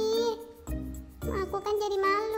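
A high-pitched, sped-up cartoon character voice making wordless hums or laughs over light children's background music with a tinkling jingle.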